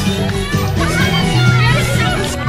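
Music playing, with a bass line that gets stronger about halfway through, and a group of children and adults calling out and shouting over it.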